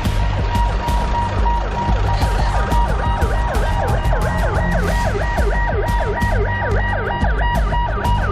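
Electronic siren yelping in rising-and-falling sweeps that quicken to about three a second, over music with a heavy bass.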